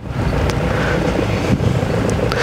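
Steady engine and road rumble of a moving vehicle, heard from on board, with a faint steady hum.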